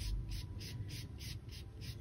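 Paintbrush bristles scratching on canvas in short, quick strokes, about four a second, each a brief soft scrape.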